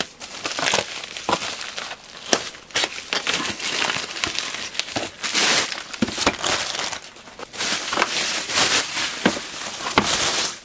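A plastic mailer bag being torn open and its bubble-wrap lining handled, a continuous crinkling and crackling of plastic with many sharp crackles. The loudest patches come about halfway through and again near the end.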